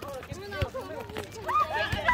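Several young players' voices calling out during an outdoor volleyball rally, getting louder and higher-pitched in the last half-second.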